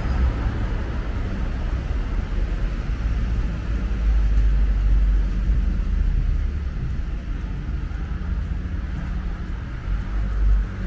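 Road traffic on a city street: cars driving past in a steady low rumble that swells about four seconds in.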